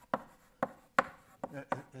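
Chalk tapping and scraping on a blackboard as a word is handwritten: a string of sharp taps, the loudest about a second in.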